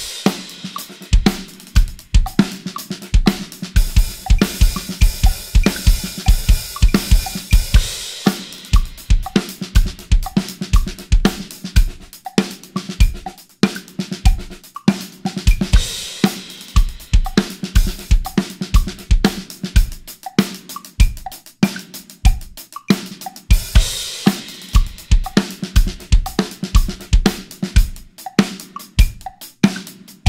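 Mapex Saturn IV drum kit with Bosphorus cymbals played as a full groove: bass drum, snare, hi-hat and crash cymbals. The groove starts as two bars of 4/4 at 120 BPM, then moves to a new tempo set on every fifth sixteenth note, a metric modulation of 4 against 5.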